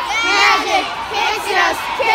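A group of young girls, cheerleaders, shouting and yelling at once in many overlapping high voices.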